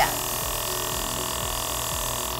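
Belloccio airbrush makeup compressor running with a steady hum and a faint even hiss of air, feeding an airbrush stylus that is spraying foundation.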